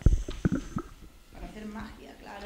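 A few sharp, low thumps and knocks from a handheld microphone being handled and moved, mostly in the first second. Faint children's voices murmur in the background near the end.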